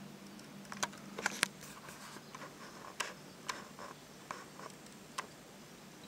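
Faint, irregular clicks and ticks from a Shimano 4000 spinning reel being handled as its bail is worked.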